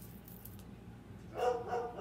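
A dog barking once, a drawn-out pitched bark that comes in about a second and a half in. Faint clicks of handling come before it.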